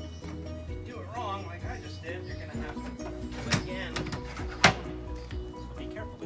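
Background music with a singing voice, over which a sheet-metal cabinet drawer is pushed home on its slides: two sharp knocks about a second apart in the middle, the second the louder.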